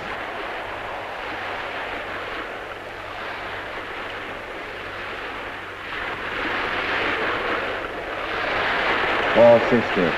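Rushing noise of waves and wind over a choppy sea on a 1930s film soundtrack, swelling about six seconds in and again near the end. A man's voice calls a range number at the very end.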